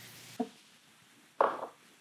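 Grated onions sizzling faintly in hot oil in a stainless steel skillet as a spatula stirs them. A light knock comes about half a second in and a short, louder scrape about halfway through.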